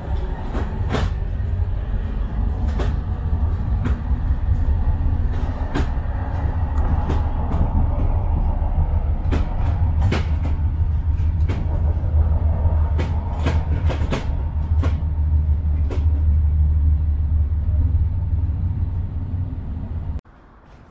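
Low, steady running rumble heard from inside a moving city transit vehicle, with frequent sharp clicks and rattles over it; it cuts off suddenly at the end.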